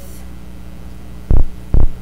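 Steady electrical hum on the sound system. About a second and a quarter in, three loud, short low thumps come roughly half a second apart.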